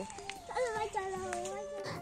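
Faint voices, like children talking, quieter than the surrounding speech.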